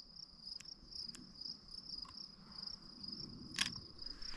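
Crickets chirping in rapid, even pulses, a steady high trill. A few faint clicks, then a sharper click near the end as a camera shutter is released.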